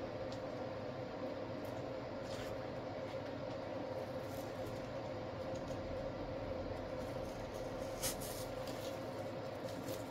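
Steady low room hum with a faint constant tone, over which artificial flower stems are handled and pushed into the arrangement, giving faint rustles and a light click about eight seconds in.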